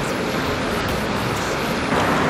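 Steady rushing of a mountain stream, an even noise with no breaks.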